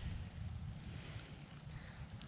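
Wind buffeting the microphone, a low uneven rumble.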